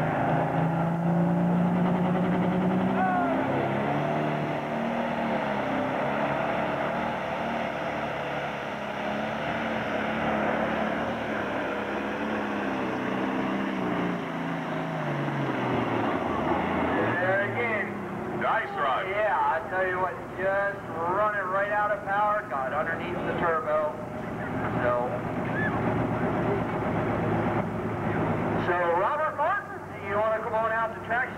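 Turbocharged diesel engine of a John Deere pulling tractor at full throttle dragging a weight-transfer sled. Its pitch climbs in the first seconds, then sags slowly as the load builds and the tractor bogs down, and the engine sound falls away about 16 seconds in, followed by voices.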